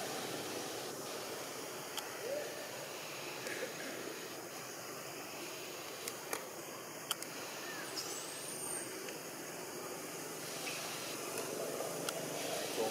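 Steady hiss of outdoor forest ambience, with a few faint clicks and one brief high chirp about two-thirds of the way through.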